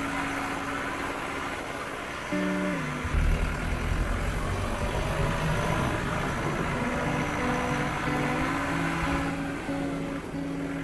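Car driving, its engine and road noise a low rumble that comes in about three seconds in, under background music with long held notes.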